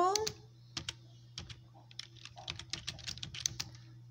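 Computer keyboard typing: an irregular run of quiet key clicks, thickest a little past the middle, as a short phrase is typed.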